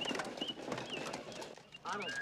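High squeaky chirps from alien creatures in a film soundtrack, short and repeated about twice a second with faint clicks. Near the end a louder warbling call with several pitches begins.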